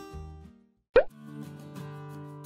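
Background guitar music fades out, and after a brief silence a short, loud rising 'bloop' pop sound effect sounds about a second in. New background music starts right after it.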